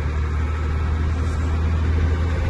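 Truck engine running steadily under way, heard from inside the cab as a deep, even drone with road noise.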